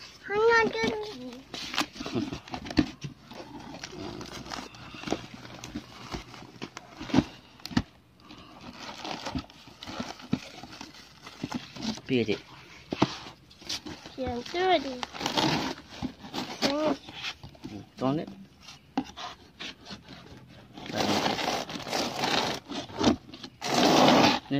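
Bubble wrap and a cardboard box crinkling and rustling as a wrapped parcel is handled, with voices speaking now and then, loudest near the end.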